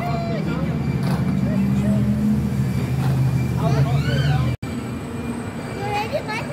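Carousel turning, its drive giving a steady low hum that swells through the middle, under scattered voices of people around the ride. The sound cuts out for an instant about two-thirds of the way through.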